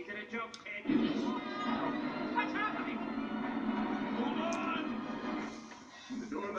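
Film soundtrack playing from a television: music mixed with voices, swelling about a second in and fading near the end.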